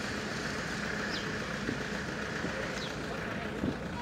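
Steady running and road noise of a car driving along a street, heard from inside the cabin.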